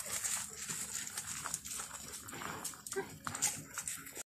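A dog sniffing and moving about over gravel: irregular soft scuffs and snuffles.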